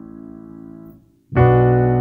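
Kurzweil Academy digital piano: a low A major chord held and fading, released about a second in, then a B minor chord struck in the low register and held.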